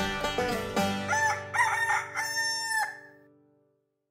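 Background music stops about a second in, and a rooster crows once, a three-part cock-a-doodle-doo, then the sound fades out to silence.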